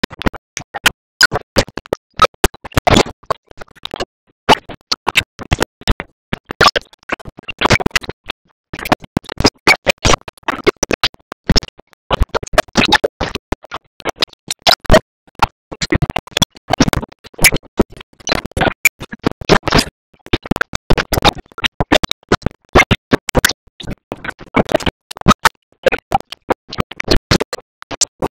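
Chopped, glitching audio: rapid irregular bursts of sound across the whole range, cut by short silences many times a second, like a record being scratched.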